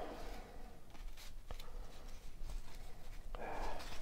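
Cardboard trading cards rustling and sliding against each other as they are leafed through by hand, with a couple of light flicks.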